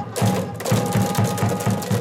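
Baseball cheering-section music: a low drum beat about four times a second with sharp claps on the beat, over a long held note.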